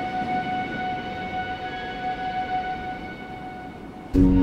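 Soft piano lullaby music: a few held notes ring on and slowly fade away, with no new notes struck.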